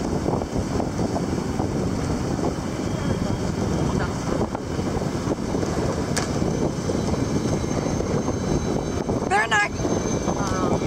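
Wind buffeting the microphone on a moving sailboat, with water rushing along the hull, a steady dense rush. Near the end, a short high-pitched voice cry.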